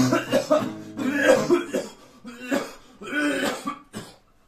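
Acoustic guitar and a man's voice ending a song during the first second and a half, then coughing twice in the second half.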